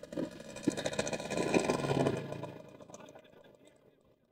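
Small motor scooter engine running as it rides off at low speed. The sound dies away about three seconds in.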